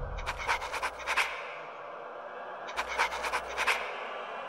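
Film trailer sound effect: two bursts of rapid, breathy clicking, each about a second long, over a faint low rumble.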